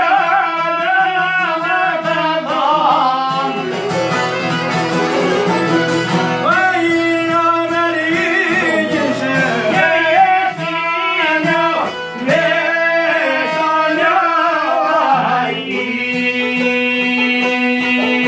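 Albanian folk song played live: a man's voice sings over strummed çifteli and long-necked lute with a bowed violin. About fifteen seconds in the singing stops and the instruments carry on alone with steady held notes.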